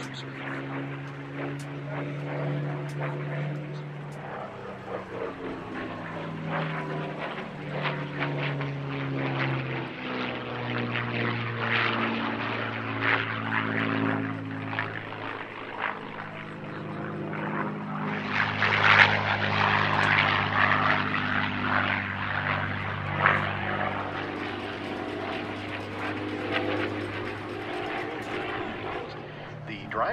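A World War II single-engine fighter's V-12 piston engine and propeller flying aerobatics overhead. The engine note keeps rising and falling in pitch as it manoeuvres, and is loudest about two-thirds of the way through.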